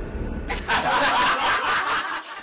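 Laughter that breaks out about half a second in, over a low music bed that drops away soon after.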